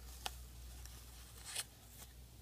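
Blue painter's tape being peeled off a painted plastic miniature: a faint crinkling peel with two brief sharp ticks, one just after the start and one near the end.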